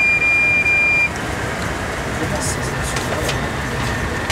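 A single steady high electronic beep lasting about a second, over the constant machinery and ventilation hum inside a submarine control room.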